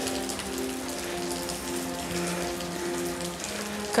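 A steady, even hiss under a soundtrack of low, slowly changing held notes.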